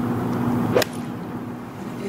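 An eight iron striking a golf ball once, a single sharp click about a second in, over a steady low hum.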